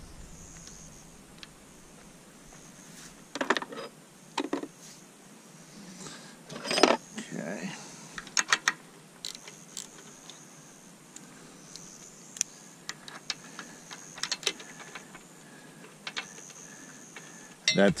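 Metal wrench clicking and clinking against the lower-unit bolts of a Yamaha outboard as they are loosened, in a few short scattered clusters.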